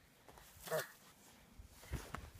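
A child's brief vocal sound about a third of the way in, falling in pitch, over quiet snowy surroundings. Near the end come soft thuds and crunching of snow as the child moves by the sled.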